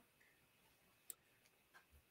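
Near silence: room tone in a pause between speech, with one faint click about halfway through.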